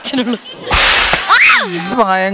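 A long flexible rod swung like a whip, making a sudden swish and crack about two-thirds of a second in, followed by a rising then falling squeal.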